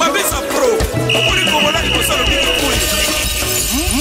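East African rumba music from a DJ mix, with a beat and melody. A high steady tone comes in about a second in and fades out after about two seconds.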